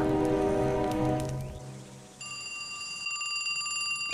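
A held music chord fades out over the first two seconds. About two seconds in, a cartoon alarm sound effect starts: a steady, high ringing tone that holds to the end.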